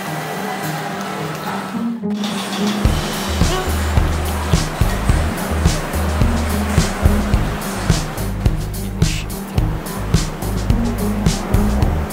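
Background music. After a brief break about two seconds in, it goes on with a heavy bass line and a steady beat of about two beats a second.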